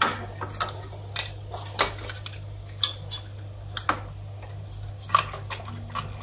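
Irregular light clicks and taps of hands handling wiring and closing a small plastic electrical box, over a steady low hum.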